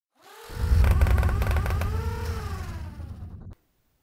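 Intro sound effect: a swell into a deep rumble with tones that rise and then fall, cut off suddenly about three and a half seconds in.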